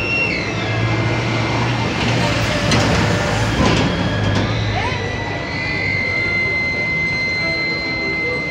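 Street traffic with a bus engine running close by, swelling briefly as the bus passes about halfway through, under indistinct voices.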